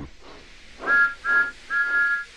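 Steam engine whistle giving three toots on a two-note chord, the third toot longer than the first two, each opening with a short breathy rush.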